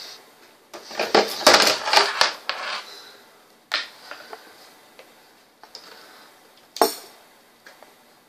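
Tools handled on a desk: a cluster of knocks and light metallic clatter in the first few seconds, then a few single sharp clicks, the loudest near the end, as the soldering iron is set down and pliers pull the desoldered fuse off the circuit board.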